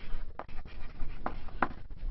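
Chalk writing on a blackboard: irregular scratchy strokes with a few sharp clicks.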